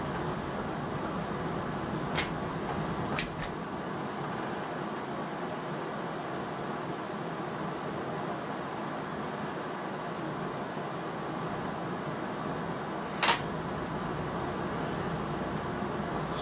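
Steady background hum with three short, sharp clicks as a Hatsan Striker 1000x .22 break-barrel air rifle is handled and reloaded with a pellet, the loudest click coming about three seconds before the end.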